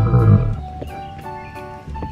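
Background music with a short, loud animal-like cry, a dinosaur sound effect, in the first half second.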